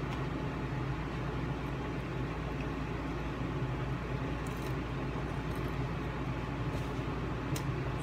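Steady low mechanical hum with an even background hiss, unchanging throughout.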